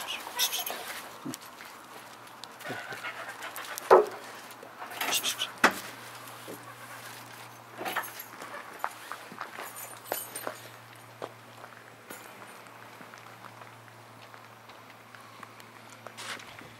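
A golden retriever moving about close by on gravel, with scattered crunches and clicks. The loudest sound is a sharp knock about four seconds in.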